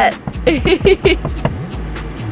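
A vehicle engine running with a steady low rumble, under a few short bursts of laughter in the first second.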